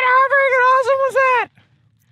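A man's loud, long, high-pitched yell, held on one pitch with slight wobbles, breaking off about a second and a half in.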